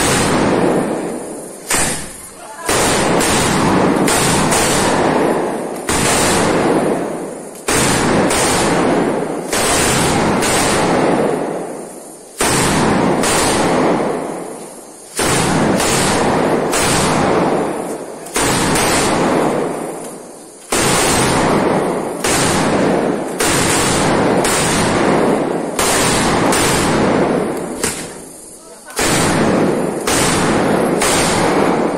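A long string of firecrackers, more than seven metres of them hung from a bamboo pole, going off in rapid, continuous loud cracks. The bangs come in dense runs of a few seconds with short lulls between them.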